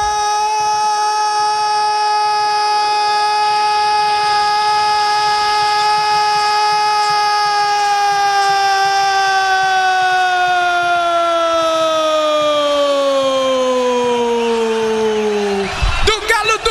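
A Brazilian radio football commentator's single long held shout of "gol" after a goal, one loud sustained note that sags in pitch over its last few seconds as his breath runs out, and breaks off just before the end.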